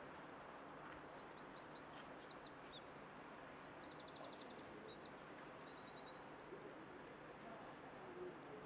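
Faint steady outdoor background noise with a small songbird singing high, quick chirps, including a short rapid trill about four seconds in.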